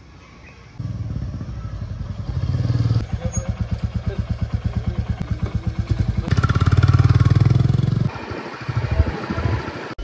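Motorcycle engine running with an even pulsing beat, growing louder as the bike passes close about six seconds in, then dropping off abruptly.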